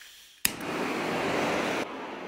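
Handheld butane torch lit with a sharp click about half a second in, then its flame hissing steadily until it cuts off abruptly shortly before the end.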